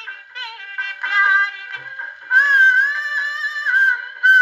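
A wind-up acoustic gramophone plays a shellac 78 record of a Pakistani film song. The sound is thin and has no bass. About halfway in, a wavering melody note is held for over a second.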